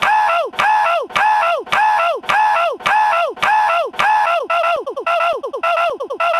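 A short honking call looped in identical copies about twice a second, each ending with a falling pitch. From about four and a half seconds in the repeats become shorter and faster, like a stutter edit.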